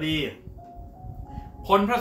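A man speaking Thai over soft background music. In the pause between his words, a few held notes of the music step upward in pitch.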